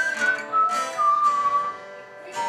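A man whistling a slow melody of a few held notes that step downward, over a strummed acoustic guitar.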